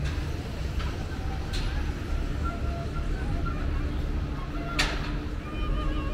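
Night street ambience: a steady low rumble of city traffic with passers-by talking, and faint harmonica notes from a seated street player. A sharp click about five seconds in.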